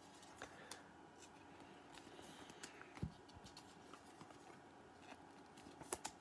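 Near silence, with faint scattered ticks and light rustles of trading cards being handled and slid one behind another as a pack is flipped through.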